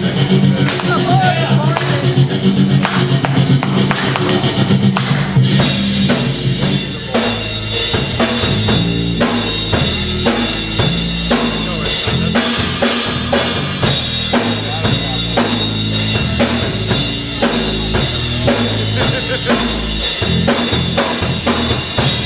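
Heavy metal band playing live: a held low chord with sparse drum hits, then about six seconds in the full band comes in with cymbals and steady, driving drums.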